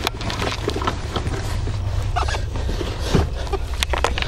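Camera microphone being handled against clothing: rustling fabric and scattered small knocks and clicks over a steady low rumble.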